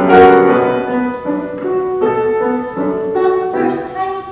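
Grand piano playing a short solo interlude in a song accompaniment, with the soprano resting between phrases.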